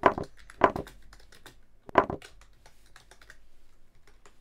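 Typing on a computer keyboard: a run of light, quick key clicks with a few louder knocks among them.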